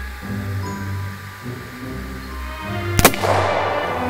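Background music, with a single sharp shot about three seconds in from a triple-barreled percussion-cap (cap-and-ball) volley pistol, its three black-powder barrels firing together. The shot has a short noisy tail after it.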